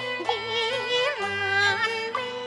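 A woman singing a Cantonese opera song with a wide, wavering vibrato, phrase after phrase, over an instrumental accompaniment of held low notes.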